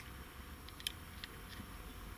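A few faint, sharp light clicks, about four spread over two seconds, over a low steady background hum.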